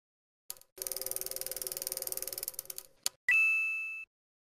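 Title-card sound effects: a fast run of mechanical ticking for about two seconds, a single click, then one bright bell-like ding that rings and fades.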